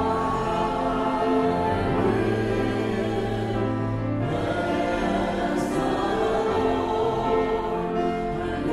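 Church hymn music: many voices singing together over sustained chords, the harmony changing every two seconds or so.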